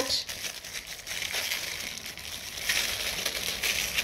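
Clear plastic packaging of a prefilled flush syringe crinkling as it is handled in gloved hands, louder about three seconds in.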